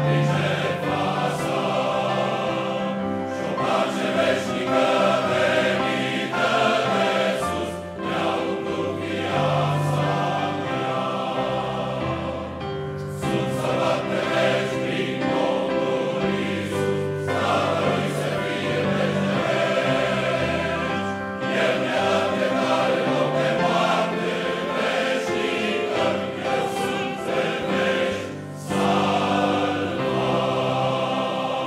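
Large men's choir singing in harmony, in long held chords, with brief breaks between phrases.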